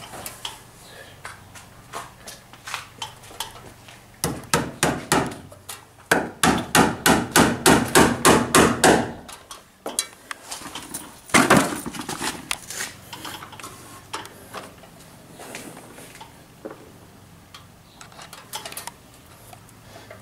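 Hammer striking against a wooden roof beam while a cable is fixed along it. A short run of blows comes a few seconds in, then a quick, even run of about five blows a second for some three seconds, and a couple more strikes a little later.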